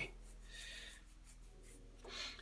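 Quiet room tone with a steady low hum and a faint, brief rustle about half a second in.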